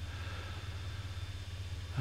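Steady low background hum with a faint hiss, the constant noise floor under the narration.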